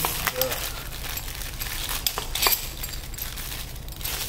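Thin plastic packaging crinkling and rustling as it is handled and pulled off a metal box spanner, with a few sharp clicks along the way.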